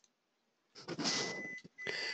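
Dead silence for most of the first second, then a breathy hiss with a thin, steady, high-pitched whine running under it: microphone background noise as the audio cuts back in between sentences.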